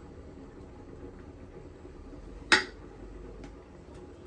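A single sharp knock about two and a half seconds in: a metal spoon struck against the wooden mortar as food is spooned into it. Under it there is a faint, steady low hum.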